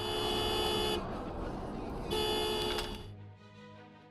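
Car horn sounded in two steady blasts of about a second each, with a pause of about a second between, over continuous road noise.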